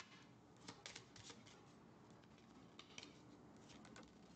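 Faint clicks and slaps of a deck of oracle cards being handled and shuffled, in small groups about a second in, near three seconds and just before the end, against near silence.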